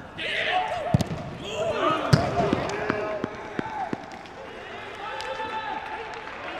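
Footballers shouting calls to one another on the pitch, with two sharp thuds of the ball being kicked about one and two seconds in. No crowd noise: the voices carry across an empty stadium.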